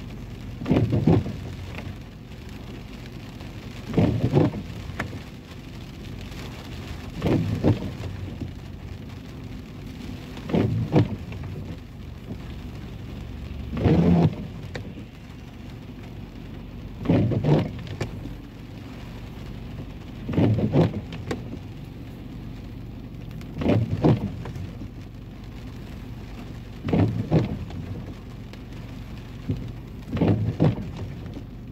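Rain pattering steadily on a car's windshield and roof, heard from inside the cabin. A windshield wiper sweeps across the wet glass about every three seconds, nine sweeps in all, on an intermittent setting.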